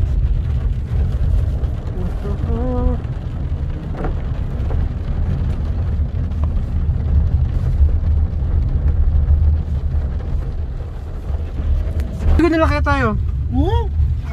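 Steady low rumble of road and engine noise heard inside the cabin of a moving car. A brief voice comes in about three seconds in, and a louder voice rising and falling in pitch comes near the end.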